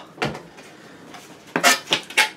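Cardboard packaging being handled and pulled apart as an item is lifted out of a box: a knock just after the start, then a brief louder scrape and rustle near the end.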